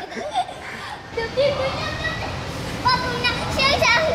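Background din of children playing and shouting in an indoor play hall, with a child's high-pitched voice calling out near the end.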